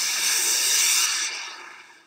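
Hissing whoosh sound effect: a loud rush of noise that starts abruptly, holds for about a second, then fades away.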